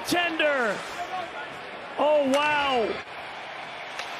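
A male commentator's voice in two drawn-out exclamations, one falling in pitch at the start and another about two seconds in, over faint arena background noise.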